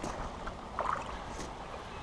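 Wind rumbling on the microphone over faint water movement at the pond's edge, with a brief faint sound about a second in.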